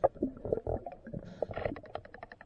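Underwater bubbling and gurgling, with scattered sharp clicks and knocks.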